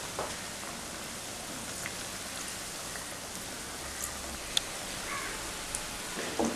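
Breadcrumbed chicken cutlets deep-frying in hot oil: a steady sizzle with scattered small crackles and one sharper pop about four and a half seconds in.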